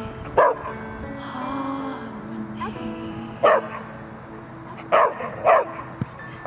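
Young Belgian Malinois barking on the 'speak' command: four short barks, the last two close together, over background music.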